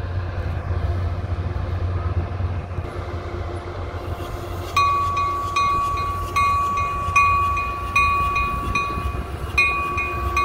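Caltrain commuter train starting to pull out of the station with a low, steady rumble. About five seconds in, a bell starts ringing, struck about once every 0.8 seconds.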